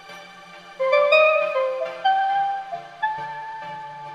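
A sampled keys preset played from a MIDI keyboard as a slow melody of single held notes. The notes begin about a second in and step upward, over a low steady tone underneath.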